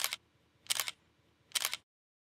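Three camera shutter clicks, evenly spaced a little under a second apart, laid over a photo slideshow as a sound effect.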